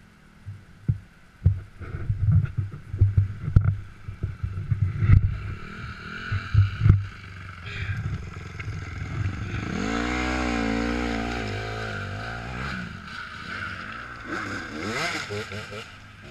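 Small off-road motorcycle climbing a rocky trail. For the first half the mount picks up irregular thumps and knocks from the bike jolting over rocks. Later the engine revs hard with a wavering pitch for about three seconds, with another short rising rev near the end.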